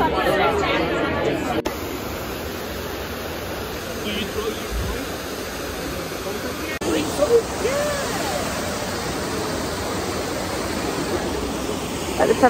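Trevi Fountain's water cascading into its basin: a steady rush of falling water, with a few scattered voices over it. It opens with brief crowd chatter that cuts off a couple of seconds in.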